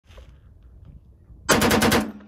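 A 1918 Colt Vickers machine gun, converted to fire .45-70, firing a short burst of about half a dozen rapid shots that begins about one and a half seconds in.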